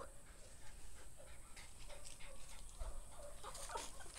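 Dog whining faintly in short, scattered whimpers, with a few light clicks near the end.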